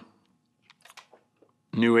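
A man's voice breaks off, then a near-quiet pause holds a few faint mouth clicks before his speech resumes near the end.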